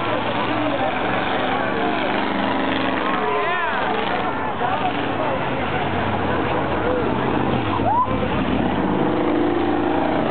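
Several race car engines running hard around the oval track, with crowd voices and shouts over them.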